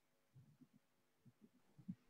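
Near silence, with a few faint low thuds.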